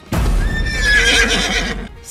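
A horse neighing once, loudly, for about a second and a half.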